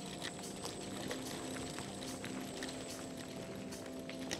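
Electric scooter rolling along a dirt forest track: steady tyre and rattle noise with many small clicks and knocks from the rough ground, and a faint steady hum.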